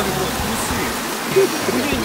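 Small mountain stream spilling over rocks in a little waterfall: a steady rush of water.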